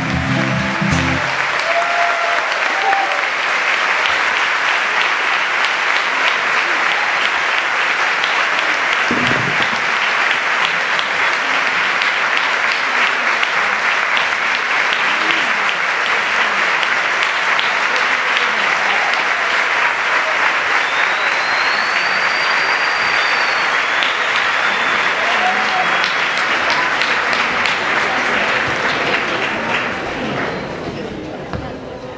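A concert-hall audience applauding, steady and sustained. The last acoustic guitar chord of the song dies away in the first second.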